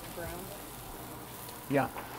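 Chopped shallots sizzling steadily in hot olive oil in stainless frying pans as they sauté toward translucent, with spatulas stirring them.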